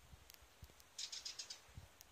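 Faint bird chirps: a quick run of about six short high notes about a second in, against near-quiet background.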